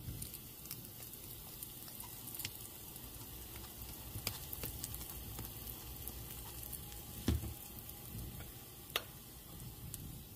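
Mustard seeds, cumin and split urad dal frying in hot ghee in a pan, a soft steady sizzle with occasional sharp pops: the tempering for curd rice. A dull thump about seven seconds in.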